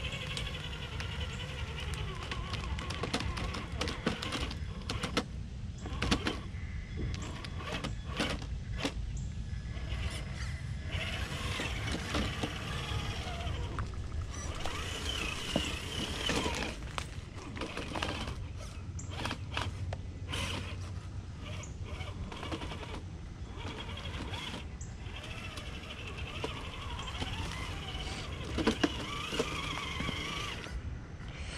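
Traxxas TRX-4 RC crawler on Traxx tracks driving over rocks: an electric motor and drivetrain whine that rises and falls with the throttle, with frequent clicks and knocks as the tracks and chassis strike rock.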